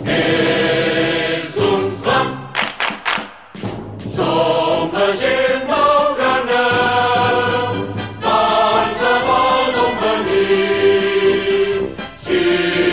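Choral music: a choir singing long held chords, dipping briefly about three and a half seconds in.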